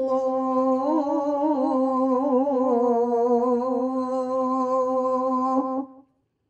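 A man's voice chanting in Arabic in the Islamic manner, drawing out one long melismatic note that wavers and turns in pitch, then cutting off abruptly near the end.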